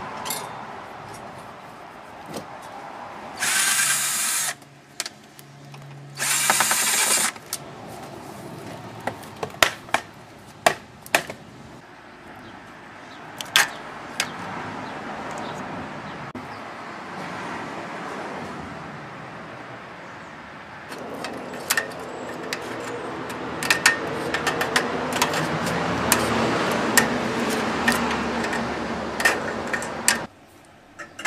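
Power drill running in two short bursts of about a second each, driving out fasteners while a tanning bed is dismantled. Many sharp metal clanks and knocks from the parts being handled are heard throughout.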